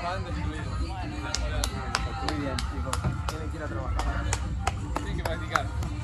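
People talking, with a steady run of sharp taps about three a second through the middle of the stretch.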